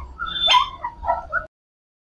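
Shih Tzu puppies whimpering and yipping in a quick run of short, high calls, cut off abruptly about three-quarters of the way through.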